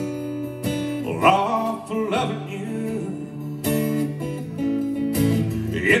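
Acoustic guitar strummed in an Americana/alternative-country song, chords ringing between strong strokes about every second or so. The singer's voice comes back in at the very end.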